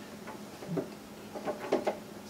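Faint, light clicks and taps of PVC sink drain pipe being handled and fitted back together, a few short ones about halfway through and near the end, over a faint steady hum.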